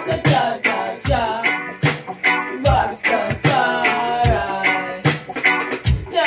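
Music: a woman singing into a microphone over a backing beat, with regular kick-drum thumps and hi-hat ticks under the voice.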